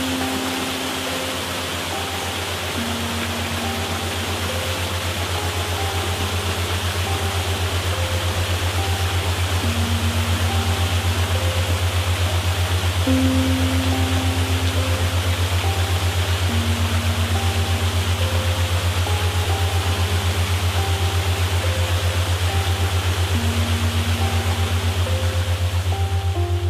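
Slow, calm background music: held notes in gently repeating phrases over a steady low drone, with an even rushing hiss like flowing water beneath.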